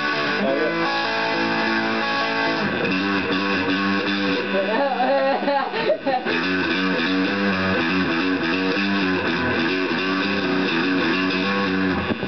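Electric guitar playing sustained chords, changing about three seconds in and then rocking back and forth between two chords.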